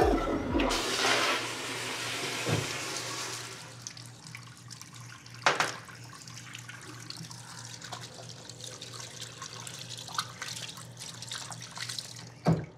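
Bathroom water: a loud rush of water over the first few seconds, as from a toilet flush or a tap opened full, tailing off into quieter steady running water with small splashes. Two short knocks come through, about two and a half and five and a half seconds in, over a steady low hum.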